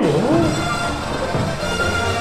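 Soundtrack music of an animatronic show playing through a dark ride's speakers.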